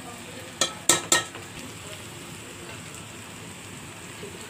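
Perforated steel spoon knocking against the metal cooking pot while stirring cooked biryani rice: three sharp, ringing clinks in the first second or so, then a steady low hiss.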